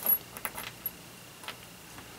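Small metal screws and washers clinking as a hand sifts through a loose pile of them on paper: a few short, scattered clinks.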